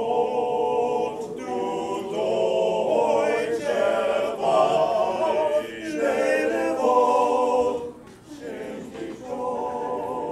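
Small men's choir singing a German part-song a cappella in close harmony, holding long chords, with a brief break for breath about eight seconds in before the voices come back in.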